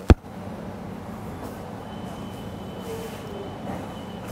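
A single sharp click right at the start, then steady room noise with a low hum and no voices.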